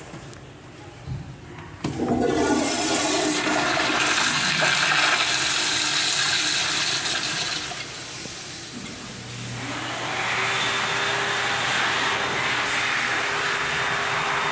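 Commercial flushometer toilet flushing: a sudden loud rush of water about two seconds in that eases off after about six seconds, then after a short lull a second, steadier rush with a faint whistling tone over it.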